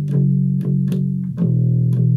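Electric bass guitar playing a riff of plucked notes, about four attacks a second, moving to a new note about one and a half seconds in.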